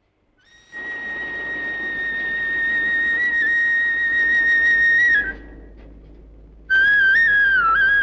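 Opening film music: a flute holds one long high note with a slight waver for about four seconds, breaks off, then starts a second phrase that steps down in pitch.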